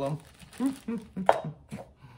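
A few sharp taps and knocks of small items being handled, with brief murmured words between them. The loudest tap comes just past the middle.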